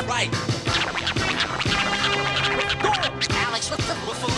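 Hip-hop beat with DJ turntable scratching over it: a steady bass line under quick back-and-forth scratch sweeps of a record.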